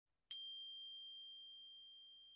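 A single high bell chime struck once, ringing on one clear tone that slowly fades.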